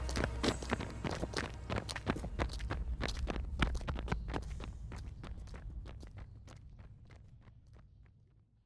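Running footsteps, quick and irregular, over a low rumble, fading away steadily until they die out near the end.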